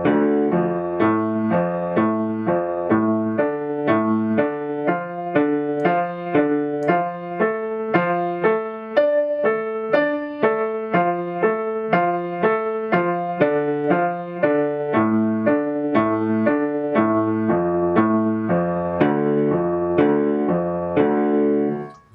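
Acoustic grand piano playing a D minor arpeggio exercise: the chord tones D, F and A struck one at a time, up and down, at an even pace, in the low-middle register.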